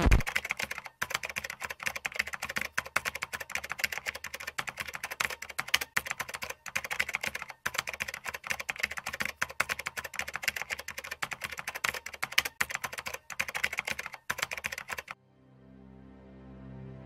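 Keyboard typing sound effect: rapid, continuous key clicks that stop abruptly about fifteen seconds in, after which soft music fades in.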